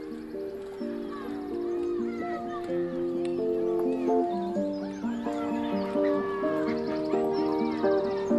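Background music of held, stepping notes, growing steadily louder, with short gliding high sounds layered over it.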